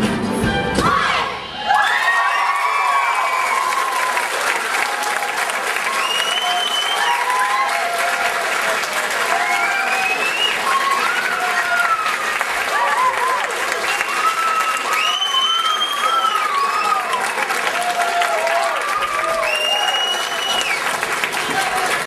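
The song's music ends about a second and a half in, and an audience applauds and cheers, with many children's high-pitched shouts and calls over the clapping.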